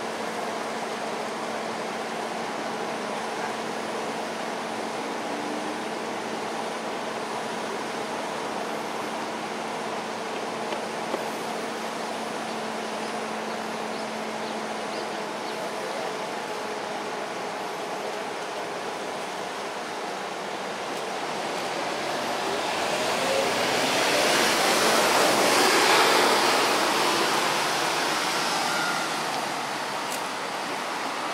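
Steady urban outdoor noise of distant traffic with a faint low hum. A vehicle passes in the last third, swelling over several seconds to its loudest and then fading.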